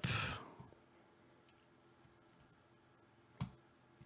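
A single sharp click of a computer mouse button about three and a half seconds in, against faint room tone, after a breath that trails off at the start.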